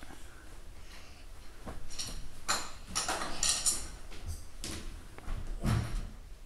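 A duvet rustling and a mattress shifting as a small child rolls across a bed, with a soft thud near the end.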